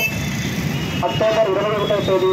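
Steady low rumble of street traffic; about a second in, a man starts speaking in Telugu into a handheld microphone.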